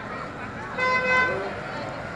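A vehicle horn sounding once, a single steady-pitched honk of under a second, over the chatter of a crowd.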